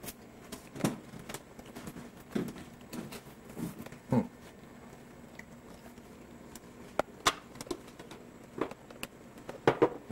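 Scattered light clicks and knocks, about a dozen at irregular intervals, from handling things in a small kitchen.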